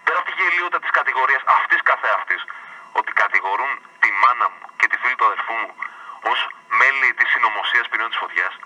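A man talking over a telephone line relayed on radio, his voice thin and narrow with no low end.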